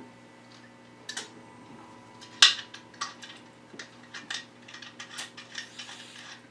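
Small metal hip flask being handled: a sharp clink about two and a half seconds in, then a run of small clicks and taps as the flask and its cap are worked in the hands.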